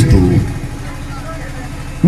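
A man's amplified voice ends a word about half a second in, then a pause filled with a steady low rumble and faint background noise.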